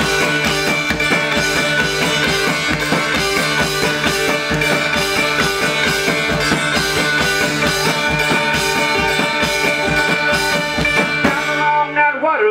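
Live blues-rock instrumental break: a banjo played over a driving, steady drum beat on a bucket-and-cymbal drum kit. The cymbals drop away near the end.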